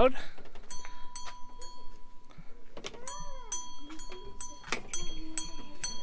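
Metal wind chimes tinkling in light, irregular strikes, each note ringing high and clear, with a short murmur of voices in between.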